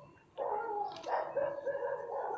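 A dog calling in long, high, drawn-out cries with short breaks between them.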